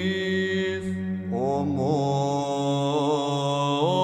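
Byzantine chant in Tone 6: voices hold a steady low drone (the ison) while an ornamented, wavering melody line is sung above it. The melody breaks off for a moment about a second in and resumes, and the drone shifts as it returns.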